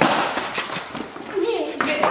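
Children's shoes scuffing and slapping on a concrete floor as they scramble, in short sharp bursts, with a brief call from a voice about halfway through.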